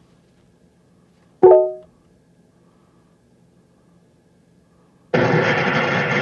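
A short chime of a few quickly fading tones from the car's infotainment system about a second and a half in as the call is placed. Near the end comes about a second of music over the phone line through the car's speakers as the call connects.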